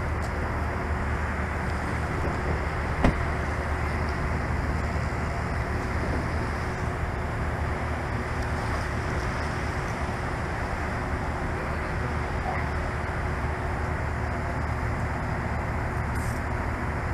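Steady hum of an idling patrol car, unchanging throughout, with one sharp click about three seconds in.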